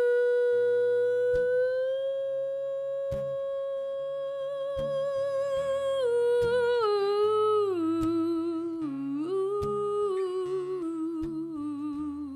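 Female voice humming a long wordless melody: one high note held for about six seconds, then stepping down with vibrato to a low note near the end. Soft low acoustic guitar notes sound beneath.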